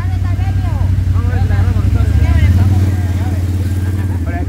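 Quad bike (ATV) engine running, its note stepping up a little past halfway as the machine pulls away, with voices talking over it.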